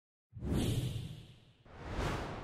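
Two whoosh sound effects from an animated logo sting. The first starts suddenly about a third of a second in and fades away, and the second swells up near the end.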